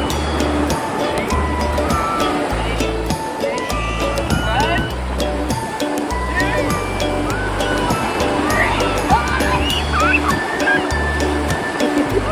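Background music with a steady bass beat, over the wash of small waves breaking on a beach.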